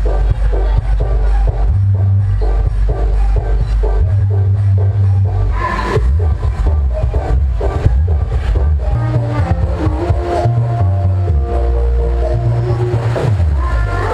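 Loud dance music with a heavy bass line and a steady beat, blasted from a parade truck's stacked loudspeaker sound system; held melody notes come in during the second half.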